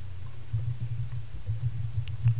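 A pause in speech with only a steady low hum in the recording's background, and no other distinct sound.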